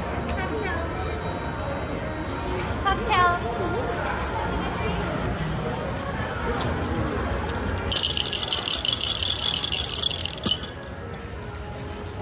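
Casino floor background: indistinct voices and electronic game-machine tones and music. From about eight seconds in, a bright high-pitched ringing jingle sounds for about two and a half seconds, then cuts off.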